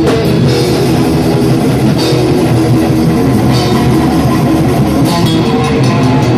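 A live band playing loud, heavy rock on electric guitar and drum kit, with no vocals.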